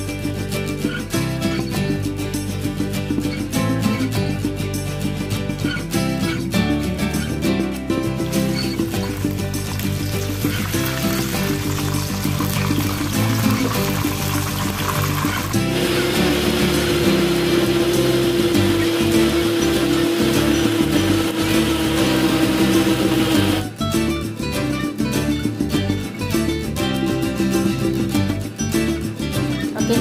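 Plucked-string background music throughout, with an electric blender running in the middle for about thirteen seconds as it grinds chilies, shallots, garlic and tomato into a paste; its motor settles into a steady hum for the last several seconds and then stops suddenly.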